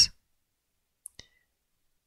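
Near silence, with two faint clicks in quick succession about a second in, from craft tools being handled on the table.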